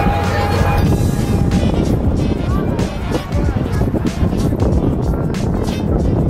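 Background music over a steady low rumble.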